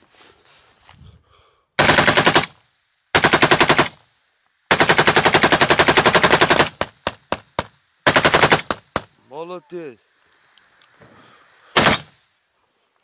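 A bipod-mounted machine gun fired in bursts: two short bursts, then a long burst of about two seconds, a few single shots, another short burst, and a last brief burst at the end.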